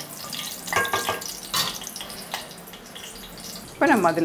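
Bay leaves and star anise frying gently in hot oil in a metal pot, with a wooden spatula stirring and scraping against the pot a few times.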